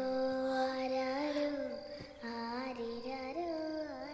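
Film background score: a soft wordless singing voice holding long notes that slide smoothly from one pitch to the next, over faint high sustained tones.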